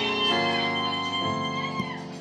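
Live band playing slow, held chords with electric guitar to the fore, changing chord twice.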